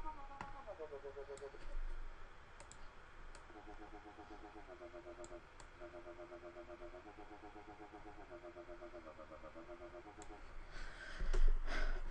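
NanoStudio Eden software synth playing a mono dubstep wobble bass patch (Harps and Vox Ah oscillators, glide on) note by note from the on-screen keyboard. It opens with a falling glide, then gives a string of sustained notes changing pitch every second or so, each chopped into fast even pulses by a sine LFO on the filter. Its oscillators are transposed up 13 semitones instead of down 13, so it sounds higher than intended, with sparse mouse clicks throughout.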